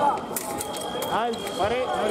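Fencing exchange: sharp clicks of blades and feet on the piste, then the electric scoring box's steady high tone sounds as a touch registers. Shouted voices follow, with a fencer yelling after the hit.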